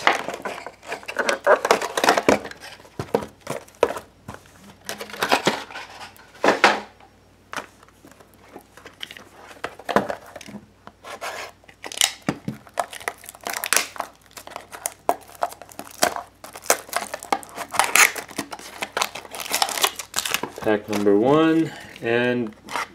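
Cardboard trading-card mini boxes being handled and cut open with a knife: irregular scrapes, taps and crinkling and tearing of the wrapping.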